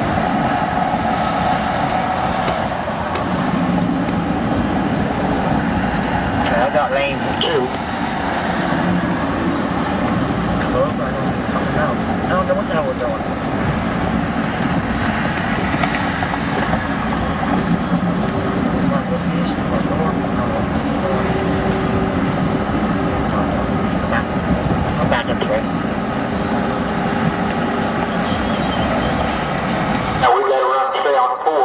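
Steady road and engine noise inside a vehicle's cabin at highway speed, with indistinct radio sound underneath.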